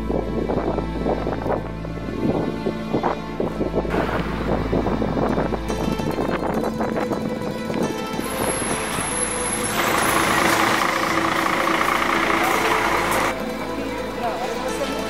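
Mandolin music with quick plucked notes. From about four seconds in, a noisy background builds under it; it is loudest from about ten to thirteen seconds, then stops suddenly.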